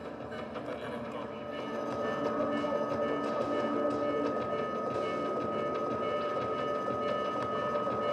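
A dense, steady mechanical-sounding drone of noise, with held tones and a thin high tone coming in about a second and a half in.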